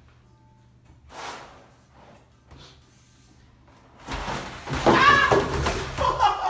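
Plastic laundry basket carrying a rider sliding and bumping down a flight of concrete stairs. The start is quiet, with one short scuff about a second in; the loud clatter of the descent comes in the last two seconds.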